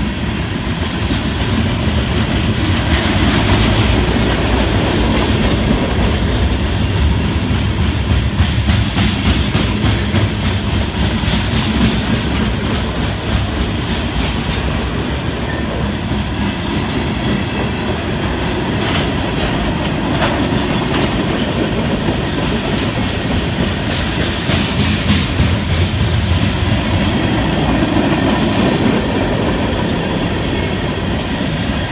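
Freight cars rolling past close by: a steady rumble of steel wheels on rail with repeated clicks as the wheels cross rail joints.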